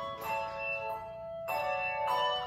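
Handbell choir playing: brass handbells rung together in chords, several tones ringing on and overlapping, with fresh chords struck near the start and about a second and a half in.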